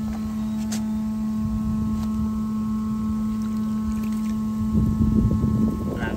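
Steady drone of a running motor, one even humming pitch, over rumbling wind noise on the microphone that grows louder near the end.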